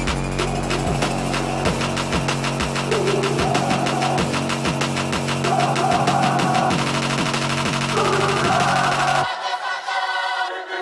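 Background music: an electronic track with a steady fast beat and heavy bass; the bass drops out about nine seconds in.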